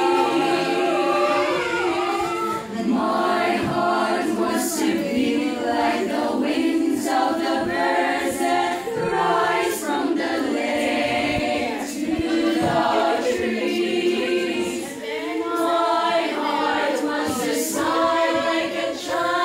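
Children's choir singing a cappella, several voices holding sustained notes in harmony.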